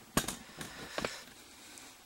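Handling noise: two sharp clicks about a second apart, over low room tone.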